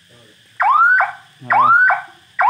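Turn-signal warning buzzer on a công nông farm truck, sounding a repeating electronic chirp: a tone that sweeps upward and cuts off with a short second note, twice, about a second apart.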